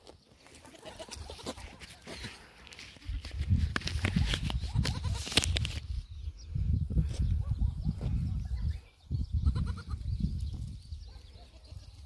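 Goats bleating a few times, over the low rumble and rustle of a phone microphone being carried and handled.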